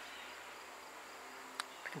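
Faint, steady chirring of insects, with a single soft click about one and a half seconds in.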